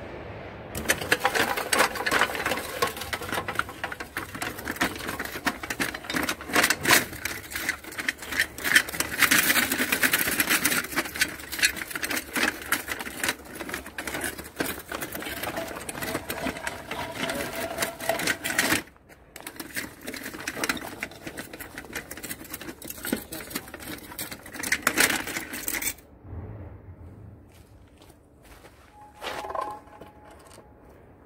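A homemade tracked robot's drive motors whirring and its track links clattering fast as it drives and climbs over wooden beams. The rattle breaks off briefly about 19 seconds in, runs again, and stops about 26 seconds in.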